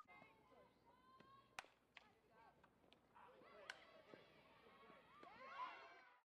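Near silence, with faint distant voices and a few faint clicks.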